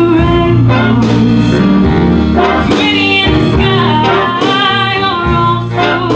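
A female vocalist singing a slow ballad, backed live by a jazz big band of horns, piano, guitar, bass and drums.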